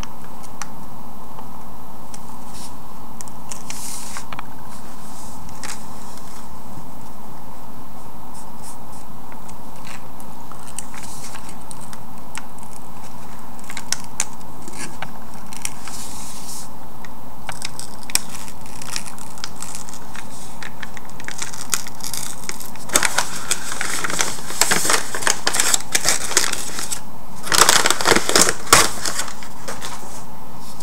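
Freezer paper being slowly peeled off a rock: scattered faint crackles at first, then a denser spell of paper crinkling and tearing late on, over a faint steady hum.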